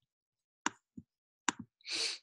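Two short, sharp clicks about a second apart with a soft thump between them, then a brief breath drawn in near the end.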